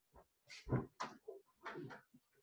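A person clearing the throat and coughing in a quick series of short bursts, the loudest a little under a second in.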